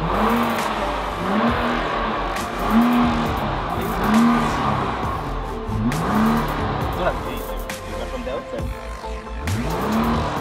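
Nissan GT-R R35's twin-turbo V6 revved repeatedly while parked. There are about six throttle blips roughly a second and a half apart, each rising quickly and dropping back, with a longer pause before the last one.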